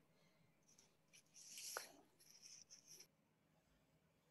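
Near silence: room tone with a few faint, short scratchy rustles between about one and three seconds in.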